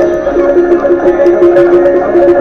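Greek laterna, a hand-cranked barrel piano, playing a tune as its handle is turned: the pinned cylinder drives hammers onto the strings, giving a melody of held notes over many quick strikes.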